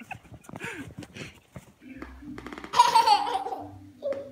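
Someone laughing, then a loud, high-pitched squealing laugh that falls in pitch, about three quarters of the way in.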